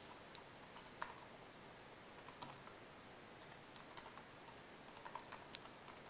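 Faint typing on a laptop keyboard: scattered keystrokes in short runs, the loudest about a second in, as a web address is typed into the browser.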